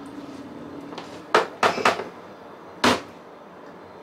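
A few sharp knocks from a kitchen knife and cut pineapple on a wooden cutting board, with a quick cluster in the middle and a last single knock near the end.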